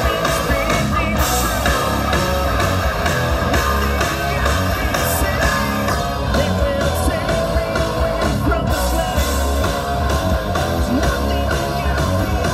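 Live rock band playing loudly: electric guitars, bass guitar and drums, with a lead singer singing into the microphone.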